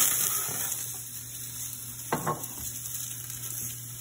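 Sliced yellow squash and zucchini sizzling in hot olive oil in a stainless steel sauté pan, the sizzle easing a little after the first second. The pan knocks sharply at the start and once more about two seconds in as it is shaken and set down on the stovetop.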